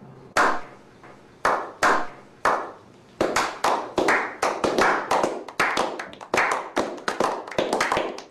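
A small group of people clapping by hand. A few single claps come slowly, spaced apart, then from about three seconds in more hands join and the claps come faster and overlap.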